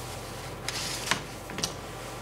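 Brief rustling and clicking handling noises under a steady low room hum, once about two thirds of a second in and again about halfway through. They come from the chairman handling his papers and picking up a handheld microphone.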